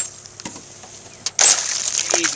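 A small hooked northern pike thrashing at the water's surface: a lull of about a second, then a fresh burst of splashing.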